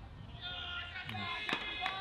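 People's voices calling out in long held tones across the ground, with a few sharp knocks between about one and a half and two seconds in.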